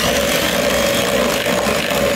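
Electric hand mixer running at a steady speed, its wire beaters churning pumpkin purée into a thick cake batter in a glass bowl.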